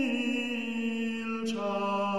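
Voices singing a late-15th-century Polish hymn in a slow, chant-like style, holding long notes and moving to a new note about one and a half seconds in.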